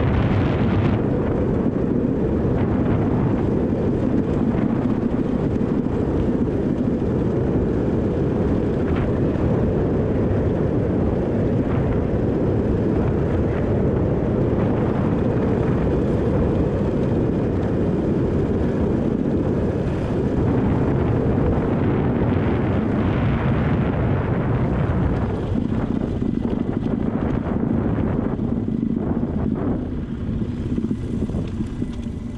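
Steady, dense rumble of wind buffeting the camera microphone together with a motorcycle's engine and tyres running along a gravel dirt road at speed.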